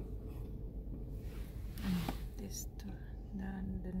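Soft, low speech, a few murmured words, over a steady low background rumble.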